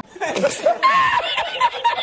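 A man laughing hard in quick, repeated bursts, a thin-sounding meme laughter clip edited in.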